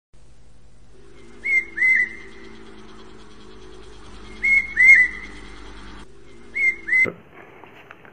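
A high two-note whistled call, two quick chirps, repeated three times at regular intervals of about two and a half seconds over a low steady hum. Both stop abruptly about seven seconds in.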